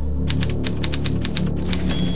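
Manual typewriter keys striking in a quick run of about a dozen clacks, followed by a brief high ring near the end.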